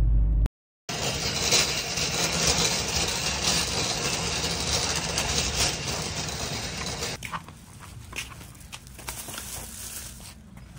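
Wire shopping cart rolling over asphalt, its wheels and metal basket rattling continuously. It starts suddenly about a second in and drops to a quieter, scattered clatter about seven seconds in.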